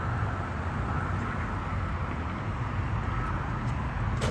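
Steady low rumble of distant road traffic.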